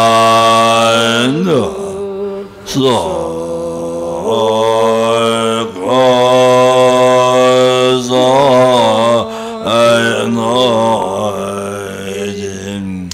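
A monk's deep voice chanting a prayer in long held notes that slide slowly up and down, with short pauses for breath every few seconds.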